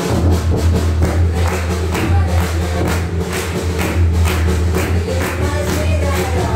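Carol music with a heavy bass and a steady beat starts up abruptly, with the group clapping along.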